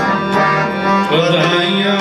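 Sikh kirtan: reed harmonium playing sustained notes with tabla strokes, and a man's voice singing.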